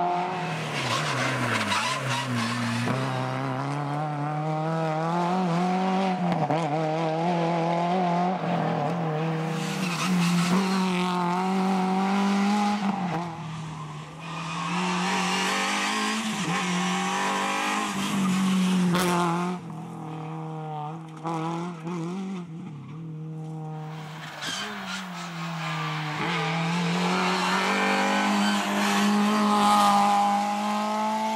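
Renault Clio rally car's engine revving hard through the gears, its pitch climbing and dropping again and again as it accelerates and lifts off for corners. The engine is quieter for a few seconds past the middle, then climbs loudly again near the end.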